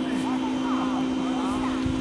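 A steady low hum under faint, distant voices.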